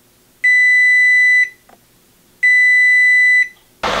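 GE Profile range's kitchen timer going off as it runs down to zero: two long beeps of about a second each, two seconds apart, on one steady high tone.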